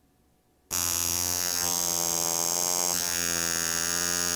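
Vulcain Cricket mechanical alarm wristwatch going off: a steady buzz that starts abruptly under a second in and keeps going, made by the alarm hammer vibrating rapidly against a thin membrane in the caseback.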